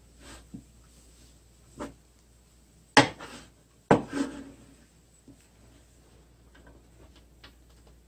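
Wooden spatulas turning fresh spindle-tree leaves in an electric frying pan during the first pan-firing for tea: soft rustling and small scrapes, with two sharp wooden knocks against the pan about three and four seconds in, the loudest sounds.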